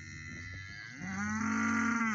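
A cow mooing once, a single drawn-out call starting about halfway through.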